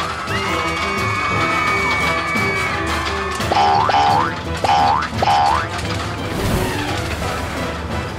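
Cartoon background music with four quick rising boing sound effects, one after another, about halfway through.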